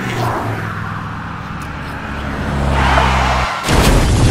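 Engine of an approaching car growing louder, then a sudden loud crash near the end as it smashes down.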